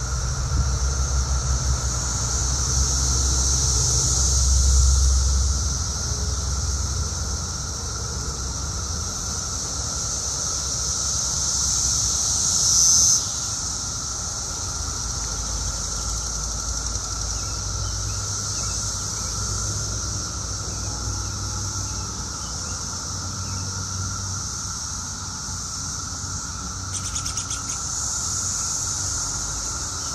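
Dense, steady chorus of many periodical cicadas, with a high buzzing band over a lower hum. About thirteen seconds in, one cicada close by swells louder for about a second and cuts off suddenly. A low rumble lies under the first several seconds.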